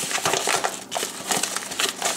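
Padded kraft bubble mailer being handled and opened by hand: a dense run of irregular paper and bubble-lining crackles and crinkles.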